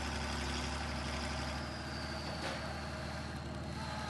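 Farm tractor's diesel engine running steadily, with a faint high whine that slowly drops in pitch.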